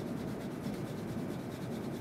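Plastic test-well holder shaken gently back and forth on cardboard, a steady rubbing and scraping against the surface as the substrate is mixed in the wells.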